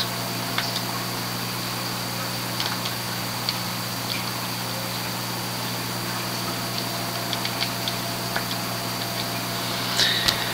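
Steady low electrical hum with an even hiss, broken by a few faint, brief clicks scattered through.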